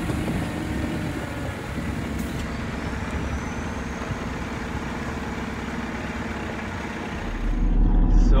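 Steady running noise of the Mercedes-Benz Vario 818 expedition truck's diesel engine and tyres on a gravel track, growing louder and deeper about seven seconds in.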